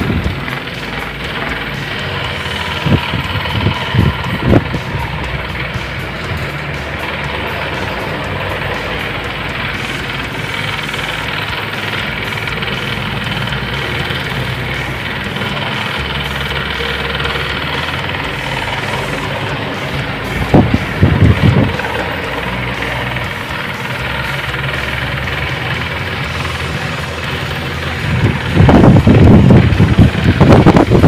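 Electric pedestal fans running with coloured plastic blades: a steady whirring hum, broken by a few brief louder knocks and growing louder near the end.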